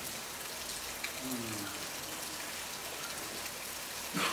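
A steady, even hiss of background noise, with a faint voice heard briefly about a second in.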